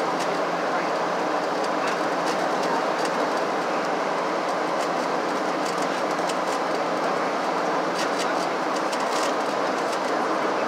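Steady cabin noise inside a Boeing 737-700 on descent: the rush of air over the fuselage and the hum of its CFM56 turbofans, even and unchanging.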